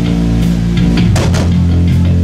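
Live rock band playing an instrumental passage: electric guitar and bass hold low chords under drum kit and cymbal hits, the chord dropping lower about a second in.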